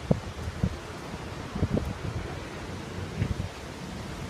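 Wind buffeting the phone's microphone, with a rustle of wind through leaves and a few soft thumps.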